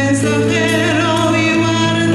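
A sung litany: a voice singing with vibrato over acoustic guitar accompaniment.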